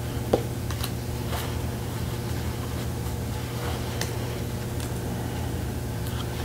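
Tarot cards being handled and moved from the front of a small deck to the back: a sharp click about a third of a second in, then faint scattered ticks and slides of card stock. A steady low hum runs underneath.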